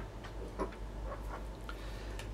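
A few faint, irregular light ticks and clicks from small fly-tying tools being handled and set down at the vise, over a low steady hum.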